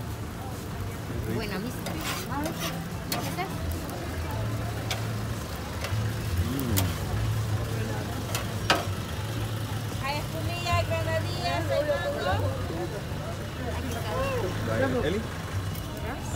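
A steady low engine hum runs under background voices, with scattered sharp clicks and clinks.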